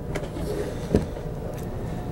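Laptop handled and set down on a table, with a single light knock about a second in, over a steady low room hum.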